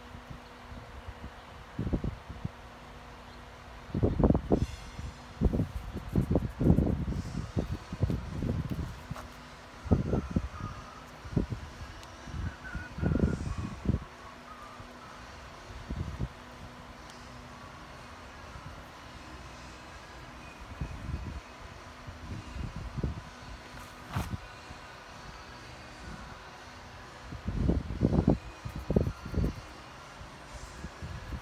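Irregular soft knocks and rubbing from a wooden half-hull model and a paper template being handled as the template is test-fitted, in clusters, over a steady low hum.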